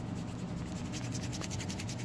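Fingers rubbing at itchy eyes, a quick, even run of faint scratchy strokes.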